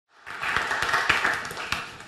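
An audience applauding, the clapping dying down near the end.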